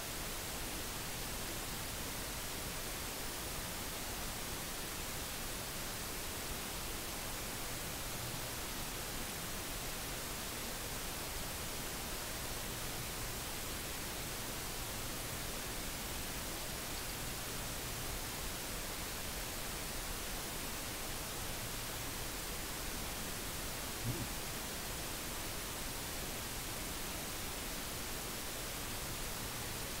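Steady hiss of recording noise with a faint low hum that comes and goes, and one short soft knock about 24 seconds in.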